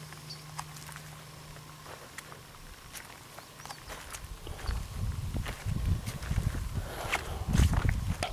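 Footsteps and handling noise from walking with a handheld camera between garden rows: scattered light clicks, then irregular low rumbling on the microphone from about halfway, growing louder near the end.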